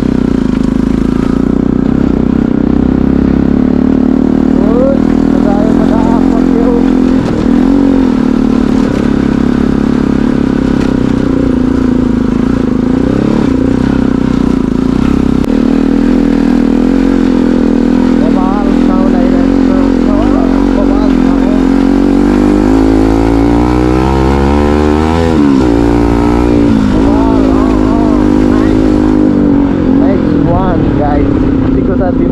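Motorcycle engine running steadily under load, heard from the rider's seat. Near the end the revs climb and then drop sharply.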